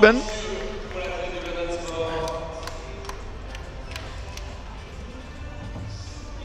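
Echoing indoor sports-hall ambience: a distant voice carries faintly through the hall in the first few seconds, with a few scattered sharp taps, over a steady low room hum.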